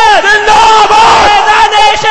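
Many voices chanting and shouting loudly together.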